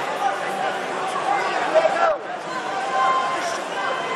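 Crowd chatter in an indoor arena: many overlapping voices of spectators and coaches, none of them clear. There is a brief drop in the sound about halfway through.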